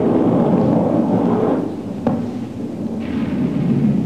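Deep, rumbling roar of a MiG-29 jet fighter going down in flames after a mid-air collision, with a sharp crack about two seconds in.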